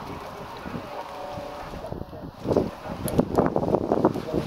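Wind buffeting the microphone, growing louder and gustier in the second half, over faint voices.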